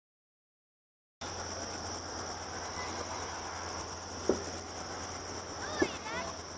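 Silence, then about a second in a chorus of crickets starts up: high-pitched chirping in fast, even pulses that carries on steadily.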